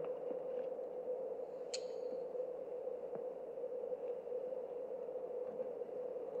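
A faint, steady held tone, with one brief high tick about two seconds in.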